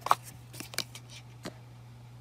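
Hands handling cardboard and plastic packaging inside a product box: a few sharp clicks and rustles, the loudest right at the start, over a steady low hum.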